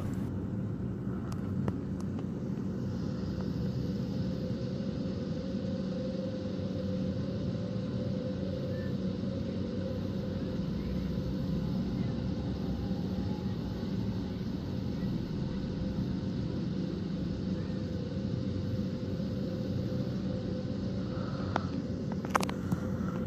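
Steady low hum and rumble with a few held tones, like an engine or machine running without change.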